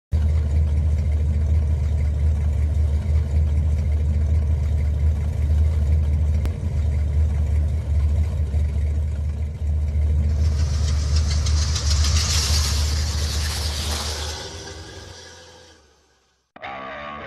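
A steady, loud, low engine-like rumble. About ten seconds in a hiss swells over it, and then the whole sound fades out near the end.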